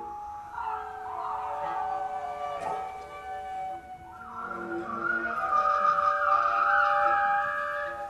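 Large free-improvisation ensemble with cellos and double basses playing held tones and slow sliding pitches that overlap. The sound swells louder in the second half.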